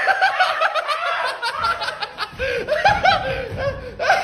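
People laughing, in quick repeated bursts of giggling.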